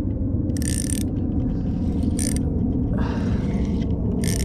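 Spinning reel cranked against a hooked fish: the gears whir and the drag slips in three short buzzing runs as line is pulled off, a sign that the drag is set too loose to lift the fish. A steady low rumble lies underneath.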